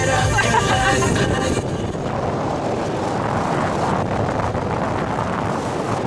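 Wind rushing over the microphone in an open-top convertible on the move, with road noise from the car; it settles into a steady rushing noise from about a second and a half in.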